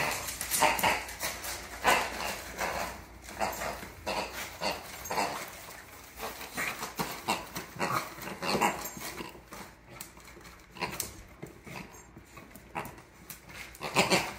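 A beagle tearing at a wrapped present with its teeth: wrapping paper rustling and ripping in short, irregular bursts, a few each second, mixed with the dog's own snuffling sounds.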